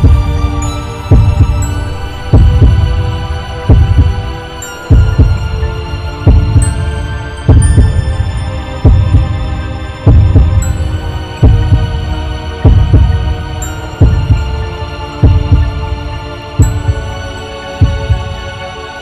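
Horror-film soundtrack: a deep, slow heartbeat-like thump about every 1.3 seconds under a sustained low drone and thin high held tones.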